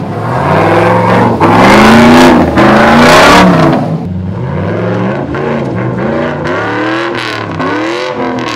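A Chevy 6.0 L LS V8 in a rock-crawling Jeep Wrangler revving hard in repeated surges as it powers up a rock climb, its pitch rising and falling with each stab of throttle. The loudest revs come between about one and three and a half seconds in, then it keeps working at lower revs.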